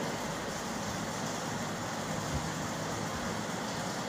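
Chalk writing on a blackboard against a steady background noise, with a soft thump about two seconds in.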